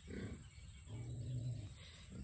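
A man's audible out-breath, then a low, steady closed-mouth hum lasting under a second, a wordless pause in emotional talk.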